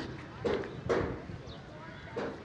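Footsteps on hard paving: three steps about half a second apart, with faint voices behind.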